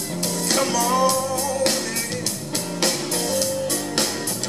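Live electric blues band: an electric guitar plays a lead fill with bent, wavering notes over held bass notes and a drum kit with cymbals.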